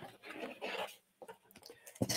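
Faint rustling and rubbing of paper and cardboard as a hand reaches into a brown card mailer, in a few short scrapes within the first second.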